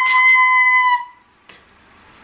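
A woman screaming one high, held note for about a second, then breaking off. A faint click follows.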